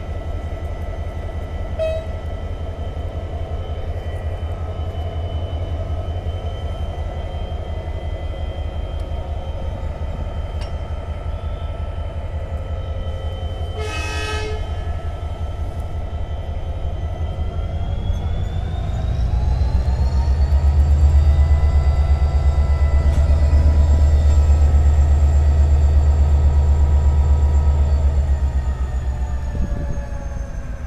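A GM class 64 diesel-electric locomotive idling with a steady low drone, with a short horn blast about halfway through. Then the engine revs up and the train pulls away under power, much louder for about ten seconds before easing slightly near the end.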